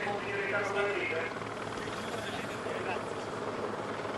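A steady, low engine drone from the race vehicles around a climbing cyclist, heard through the live broadcast sound, with faint voices in the first second or so.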